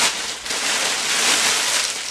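Continuous crinkly rustling of a polyester-and-cotton windbreaker jacket being handled and lifted.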